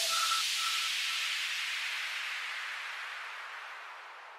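End of an electronic dance track: the beat cuts off and a white-noise wash fades out slowly, with a short tone echoing three times, fainter each time, in the first second.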